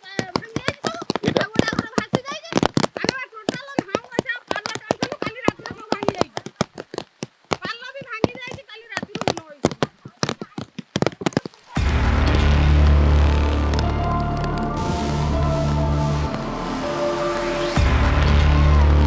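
Talking, punctuated by many sharp clicks, for about the first two-thirds. Then background music with a heavy, steady bass line cuts in abruptly.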